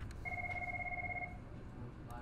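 A single electronic ring tone, about a second long, with a low and a high steady pitch sounding together and a fine trill, like a telephone ringer.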